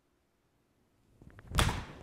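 Forged Mizuno MP-20 HMB pitching wedge swung off a hitting mat: a brief rising whoosh of the downswing, then one loud, sharp strike of the clubface on the ball about one and a half seconds in, ringing briefly as it fades.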